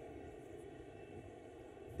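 Faint, steady background noise of a large event hall: room tone between speech, with no distinct event.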